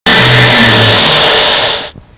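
An engine running loud, heard as a steady rushing roar with a low hum underneath, fading out near the end.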